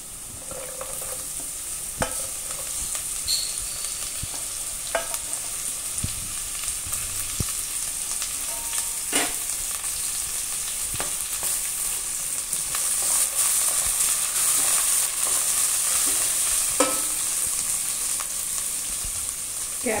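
Julienned carrots, green beans and capsicum sizzling in hot oil with chopped garlic as they are stir-fried in a non-stick kadai, a steady hiss that grows somewhat louder in the second half. A few light knocks sound through it.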